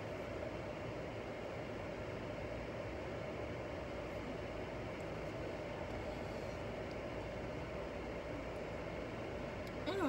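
Steady cabin noise of a car being driven: an even hum of engine and road noise inside the car.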